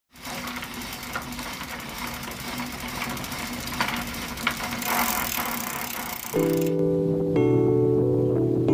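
Road traffic noise with a steady engine hum and a few light clicks. About six and a half seconds in, this gives way to background music of held chords.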